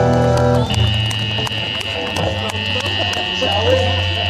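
Live band's amplified stage sound between songs: a held note from an amplified string instrument that stops under a second in. Under it run a steady high whine and a low amplifier hum, which lasts throughout; the whine drops out until just under a second in and then runs on. Faint voices come in during the second half.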